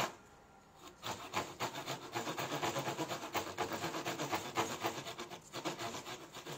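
Japanese pull saw cutting a clamped wooden block for a tenon, with fast, even rasping strokes that start about a second in. The saw cuts on the pull stroke.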